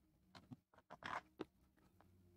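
Faint, sharp little clicks and a short scrape from a small metal pin poking into a plastic USB 3.0 header connector held in the fingers, as a snapped header pin is worked out of it. The scrape comes about a second in.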